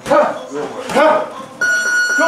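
A boxing gym round timer's electronic buzzer comes on about a second and a half in and holds one steady high tone, the signal that ends the sparring round. Before it, short voice sounds and thuds from the sparring.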